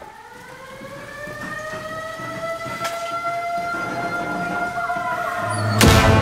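A siren-like rising tone that glides up in pitch, then holds while it swells steadily louder. It ends in a sharp hit just before the end, like a soundtrack riser building into the music.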